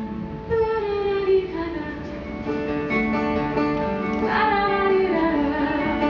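A woman singing a musical-theatre song live into a microphone, with long held notes and some sliding pitch, over instrumental accompaniment.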